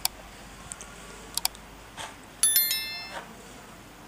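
Several light clicks of a small electronic device being handled, then a short electronic chime of several high tones just past the middle, fading within about a second.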